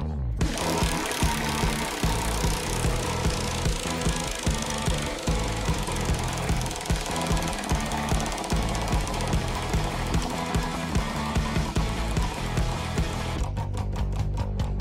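Large prize wheel spinning, its rim pegs clicking rapidly against the pointer in a fast, even rattle over background music. The rattle starts just after the spin and stops abruptly near the end.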